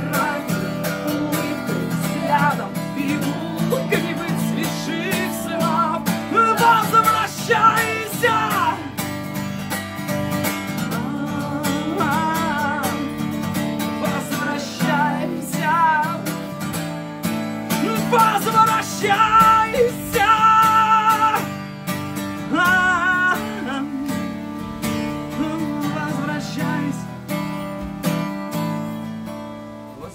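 Takamine cutaway steel-string acoustic guitar strummed in a steady rhythm, with a man singing over it in several phrases.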